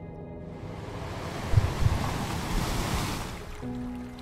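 A single wash of sea waves swells up and fades away over about three seconds, with a couple of low thumps near the middle, over soft sustained background music.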